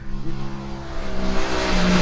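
Aprilia RS 660's 659 cc parallel-twin engine running at fairly steady revs as the bike approaches, growing steadily louder.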